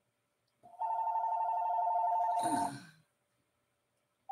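Telephone ringing: one warbling two-tone ring lasting about two seconds, cut off by a brief rougher sound near its end.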